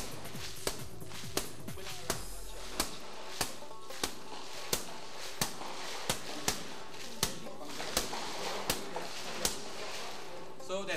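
Sharp blows struck one after another on laminated safety glass, about fifteen of them, roughly every two-thirds of a second.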